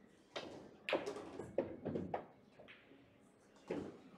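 A run of sharp clacks and knocks from the pool table and its play, about six in all, the loudest about a second in.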